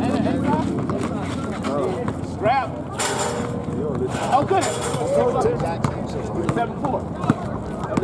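Several players' voices shouting and calling out across an outdoor basketball court during play, with occasional short knocks. Two brief bursts of hiss come about three and four-and-a-half seconds in.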